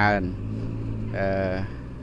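Wheel loader's engine running steadily in the background, a low even hum, under a man's voice that ends a word at the start and draws out a hesitation sound in the middle.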